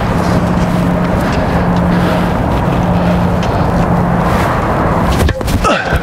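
A steady motor drone with a constant low hum. It breaks off about five seconds in.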